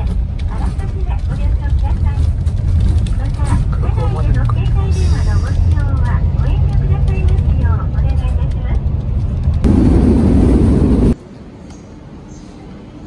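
Bus engine and road rumble heard inside the cabin, steady and low, under a recorded onboard announcement voice. Near the end a loud rushing noise lasts about a second and a half, then the sound cuts off suddenly.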